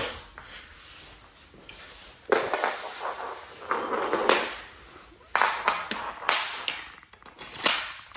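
Metal projector-screen frame rails and their connector pieces being handled on a hard floor: a run of sharp metallic knocks and clatters, about six, irregularly spaced from about two seconds in.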